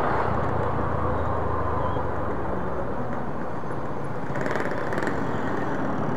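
Motorcycle engine running steadily while riding at low speed through street traffic, with road noise.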